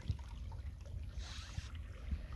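Water washing along a slowly moving boat's hull over a steady low rumble, with a brief hiss of water about halfway through.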